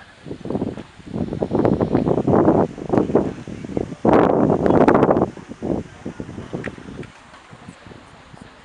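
Loud rustling and buffeting noise right on the microphone. It starts about half a second in, comes in two strong surges and dies away after about five seconds.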